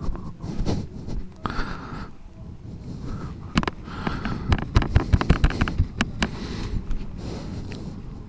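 Paper towel rustling and crumpling in hand close to a helmet-mounted microphone, with a run of irregular knocks and thumps from handling in the middle.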